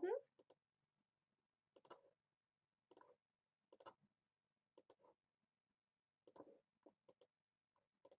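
Faint computer mouse clicks, about eight in all, some in quick pairs, spaced roughly a second apart over near silence.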